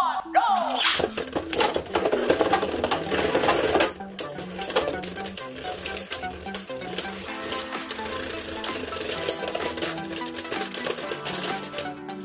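Two Beyblade Burst spinning tops launched into a plastic stadium about a second in, then a dense, rapid clatter as they spin, grind and collide against each other and the stadium floor. The clatter is loudest for the first few seconds and then eases. Background music plays throughout.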